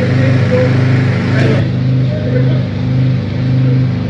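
A motor engine running steadily, a level, unchanging hum.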